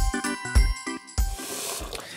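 Short musical jingle with a steady beat and bright chiming notes, ending about two-thirds of the way in.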